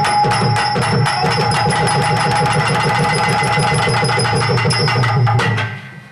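Live tabla drumming in a fast, dense rhythm under steady held melody tones, the dance accompaniment of a Tamil stage drama. The music cuts off abruptly about five and a half seconds in.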